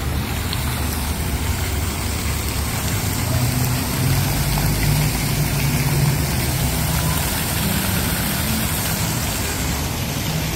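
Fountain jets splashing steadily into a stone pool, over a constant hum of road traffic.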